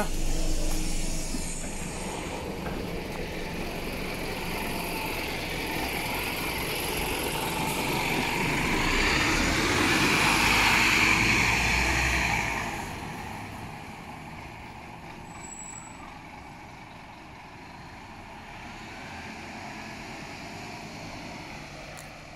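Scania K320UB bus's diesel engine pulling away, the sound building as it accelerates and goes past, then fading quickly into the distance about halfway through.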